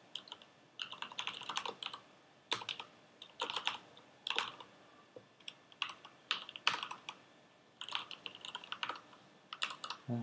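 Typing on a computer keyboard, in short irregular runs of keystrokes with pauses between them.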